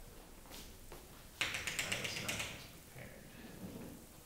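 Chalk tapping and scratching on a chalkboard: a quick run of sharp taps starting about one and a half seconds in and lasting about a second, with a few fainter single clicks around it.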